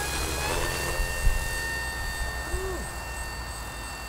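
Electric motor and large propeller of an RC flying wing running at high throttle during and just after a hand launch: a steady whine that grows slightly fainter as the plane climbs away. Wind rumbles on the microphone underneath.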